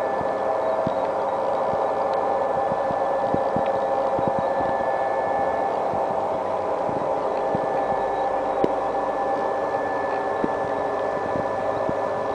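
Steady, even hum of running factory machinery, made of several held tones, with a few faint ticks and knocks scattered through.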